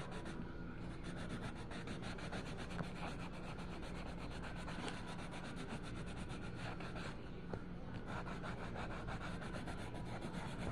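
Colored pencil scratching on paper in quick, continuous back-and-forth shading strokes.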